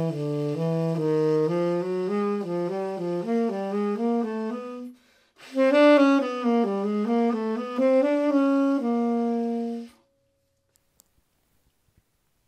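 Unaccompanied tenor saxophone playing a jazz line of quick notes, about four a second: a quasi-chromatic approach in a non-repetitive sequence. It pauses briefly for a breath about five seconds in, plays a second phrase that ends on a held note, and stops about two seconds before the end.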